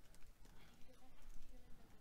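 Faint typing on a computer keyboard: a quick, uneven run of several keystrokes.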